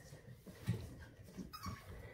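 Seven-week-old Havanese puppies playing on a hard floor and a raised pet cot: faint, scattered paw taps and soft bumps, one a little louder under a second in, with a short faint whimper near the end.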